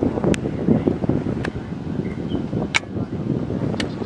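Wind buffeting the microphone as a gusty low rumble, with a few sharp clicks spread through it.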